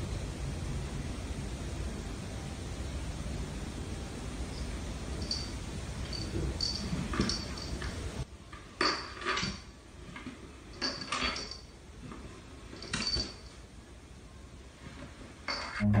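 A small dog's claws clicking on a wooden floor as it walks: light ticks with a slight ring, in irregular clusters, over a low steady rumble.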